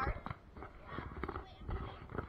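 Footsteps crunching over dry straw-covered ground, a series of short, light crunches, with a voice calling out briefly at the start.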